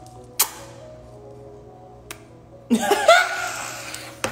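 A sharp lip smack about half a second in, a smaller click at about two seconds, then a short burst of laughter near the end, over faint background music.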